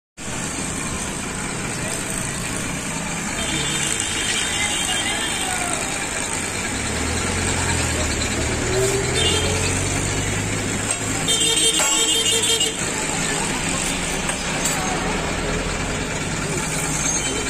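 Busy roadside traffic: a motor vehicle engine hums past through the middle, a horn sounds twice, and voices murmur in the background.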